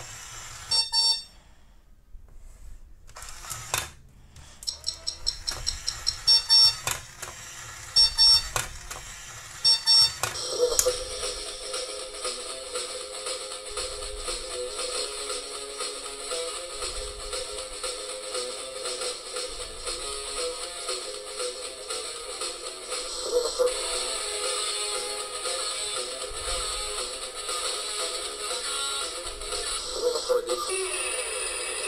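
Toy Cozy Cone alarm clock sounding its electronic alarm: bursts of sharp beeps for about the first ten seconds. Then a tune plays through its small speaker for the rest of the time, as the clock's lights come on.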